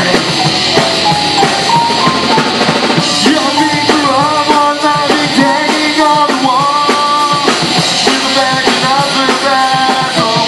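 A rock band playing loud and live: drum kit, electric guitars and bass, with a sung melody line that comes in strongly about three seconds in.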